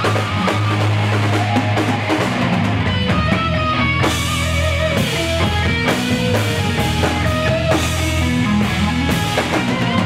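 Hard rock band playing at full volume: electric guitar over a steadily beating drum kit with cymbals.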